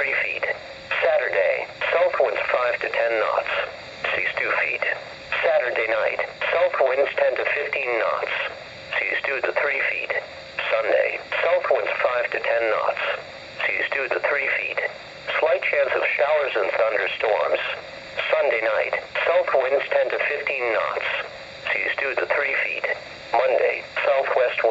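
A NOAA Weather Radio broadcast voice, computer-synthesized, reading the marine forecast in steady phrases. It plays through a weather alert radio's small speaker and sounds thin, with no deep bass and no crisp highs.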